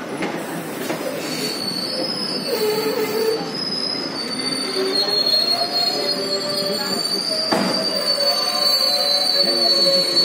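Train wheels squealing on the rails as the coach rolls slowly along: a sustained high squeal with lower wavering tones beneath it, growing a little louder. A single clunk about seven and a half seconds in.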